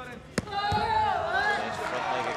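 A taekwondo kick landing on the body protector with a single sharp smack, a scoring kick worth two points, followed at once by loud shouting and cheering from the crowd.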